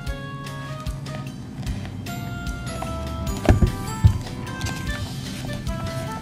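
Soft background music of sustained notes, with two short thumps a little past the middle.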